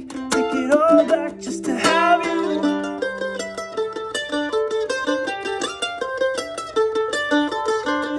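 Acoustic mandolin played solo between sung lines: picked and strummed at first, then a quick single-note melody from about three seconds in.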